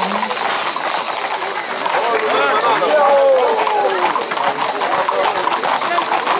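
Hooves of a group of Camargue horses clattering on asphalt at a walk, with crowd voices over them; the voices are loudest about two to four seconds in.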